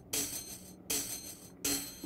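Three hi-hat sample hits triggered from an Akai MPC's pads, about three-quarters of a second apart. Each hit has a slightly different articulation.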